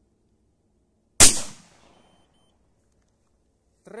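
A single 12-gauge shotgun shot about a second in: one sharp report with a short echo tail that dies away within about half a second. The shell is a handload with a medium-strength Nobel Sport primer.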